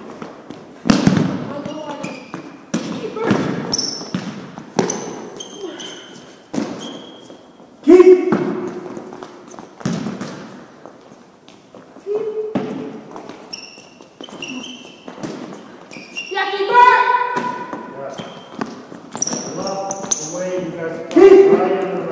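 Futsal balls being struck and thumping off the hard gym floor, walls and goalkeepers' gloves, a sharp echoing impact every second or two, the loudest about eight seconds in and near the end.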